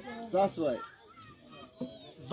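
People's voices: a short burst of speech about half a second in, then quieter background chatter with children's high voices.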